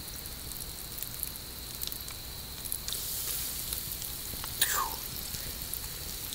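Flour-battered frog legs frying in hot grease in a skillet: a steady sizzle with scattered crackles. About four and a half seconds in there is a brief falling squeal.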